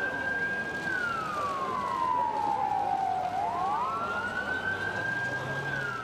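Siren wailing: a steady high tone that slowly falls, rises back and holds, then starts to fall again near the end, over outdoor background noise.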